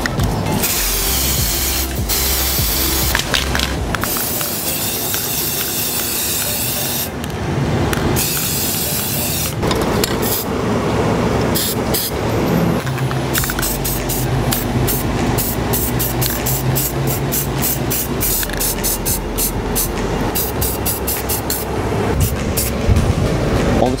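Aerosol spray paint cans hissing in repeated bursts, starting and stopping, over background music.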